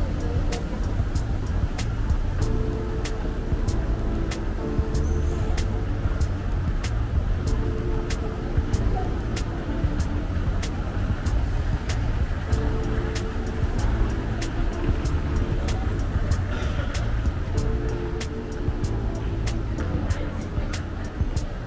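Indoor mall background music with a steady ticking beat, over a continuous low rumble.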